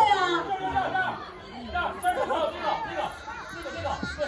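Overlapping voices of several people talking at once in a large hall, louder at the start and softer from about a second in.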